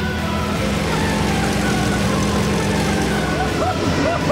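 Small plane's engine droning steadily in the cockpit. Near the end come short rising-and-falling vocal whoops.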